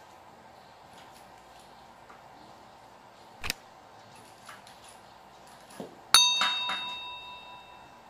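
A subscribe-button overlay sound effect: a single sharp click, then about two and a half seconds later a bright bell ding that rings out and fades over about two seconds. Faint small handling ticks sit underneath.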